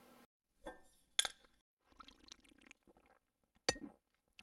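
Faint, sparse clinks of glass, with two sharper clicks about a second in and near the end.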